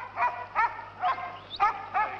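Working sheepdogs barking in short, high, quick barks, about six in two seconds, while driving a flock of sheep.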